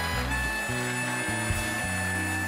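A talk-show house band playing walk-on music, with a bass line stepping from note to note about every half second under long held higher notes.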